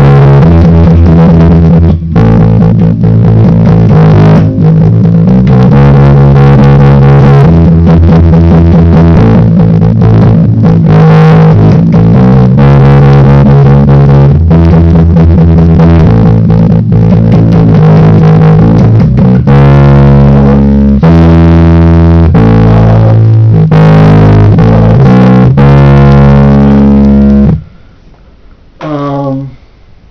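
Electric bass guitar playing a fast punk rock bassline in E major: rapid, evenly repeated notes that move to a new pitch every second or so. It is loud and stops abruptly just before the end.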